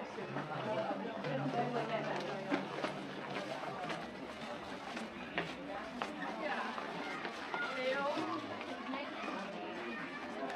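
Indistinct chatter of shoppers in a busy indoor shopping mall, with no one voice standing out, and a few short clicks scattered through it.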